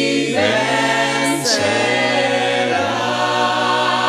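Christian rondalla music: a vocal chorus holding long notes over guitar accompaniment, with the bass changing note a few times.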